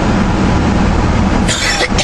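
Steady low rumble of a truck in motion heard from inside the cab, engine and road noise together. Near the end, a short cough.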